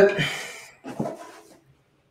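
Speech only: a man's drawn-out hesitant "uh" trailing off, then a brief second vocal sound about a second in.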